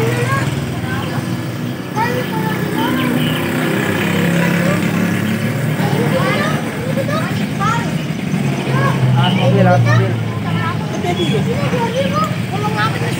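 A motorcycle engine running nearby in a narrow street, with voices in the background.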